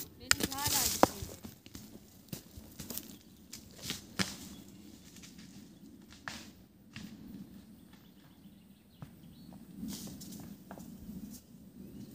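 A large rock thrown down a steep, stony slope, knocking and clattering in scattered, irregular impacts as it tumbles and bounces down until it stops. A short straining vocal sound from the thrower comes in the first second, with the loudest knock.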